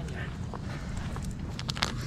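Low background noise with a few soft clicks and crackles near the end as fingers press and smooth a sticker onto a snowboard.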